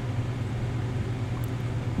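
Steady low hum with a faint even hiss, and a single faint tick about one and a half seconds in.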